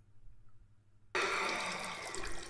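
Near silence, then about a second in a sudden steady splashing of a stream of liquid into water: a man urinating into a toilet, the stream at last running freely.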